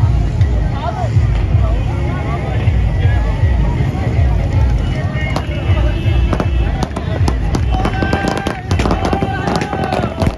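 Crowd voices over a heavy low rumble. From about five seconds in, a rapid string of firecrackers goes off, the cracks coming thicker toward the end.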